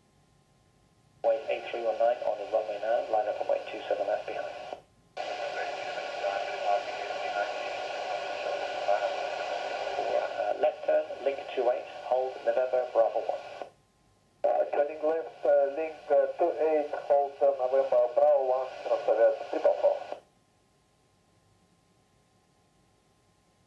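Air traffic control radio chatter: voices over a narrow, hissy radio channel in three transmissions, each keying on and cutting off abruptly. The middle transmission opens with several seconds of open-mic hiss before the voice comes in. The radio falls silent a couple of seconds before the end.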